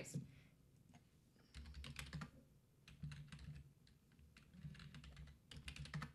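Computer keyboard typing in several short runs of keystrokes, entering a stock ticker symbol.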